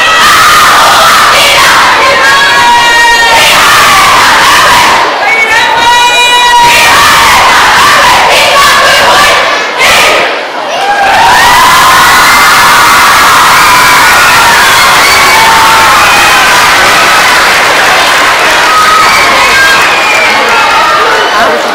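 Children's kapa haka group shouting a haka chant loudly in unison, with high drawn-out calls a couple of seconds in and again around five to seven seconds, and a brief drop in the voices near the middle.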